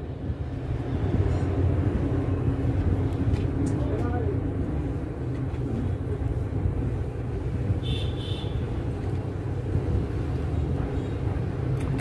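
Steady low background rumble, like distant traffic, with a short high-pitched tone about eight seconds in.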